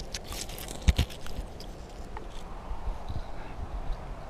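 Steady outdoor ambience hiss, with a few sharp clicks and knocks in the first second, the loudest just before the one-second mark.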